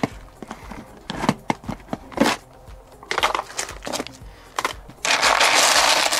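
Clear plastic storage tote being opened, its latches and lid giving a series of sharp plastic clicks and knocks. About five seconds in, loud crinkling of the plastic bags inside as a hand rummages through them.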